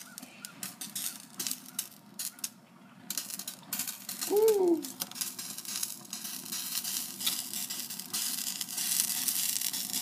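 Plastic swipe-in ID card burning in an open flame, giving an irregular crackling and sizzling with many small pops.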